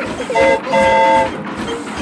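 Cartoon steam train whistle blowing two toots, a short one then a longer one, as the engine pulls into the station.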